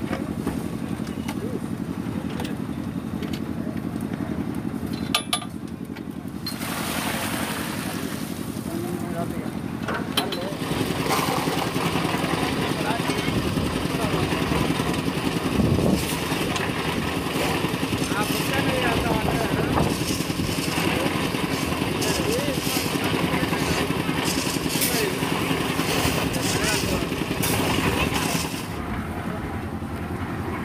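Construction-site machine engine, of the kind driving a concrete mixer and hoist, running steadily with a low drone, with people talking over it. The background changes abruptly a few times.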